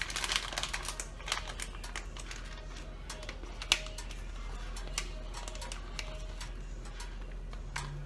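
Plastic cheese packet being torn open and handled: irregular crinkles and small clicks, with one sharper click near the middle.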